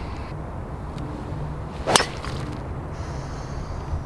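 Golf driver striking a ball off the tee: one sharp crack of the clubhead on the ball about two seconds in.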